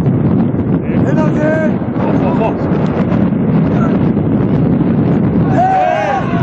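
Wind buffeting the microphone in a dense, uneven rumble, with several voices shouting across an open football pitch. The shouts come about a second in and grow more frequent near the end.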